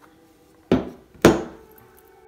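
Two sharp knocks about half a second apart, the second louder: a plastic-cased AiM Solo 2 DL lap timer being set down on a wooden tabletop.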